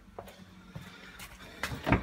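Toyota Aygo's door being opened: a few clicks and knocks near the end, the loudest as the door handle is pulled and the latch lets go.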